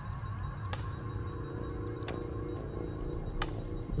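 A steady, low electrical hum and drone, with three faint ticks spaced a little over a second apart. It is the ambience of a sci-fi laboratory in an audio drama.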